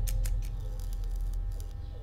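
Deep, low trailer rumble slowly fading out after a boom, with faint high held tones and light ticks above it.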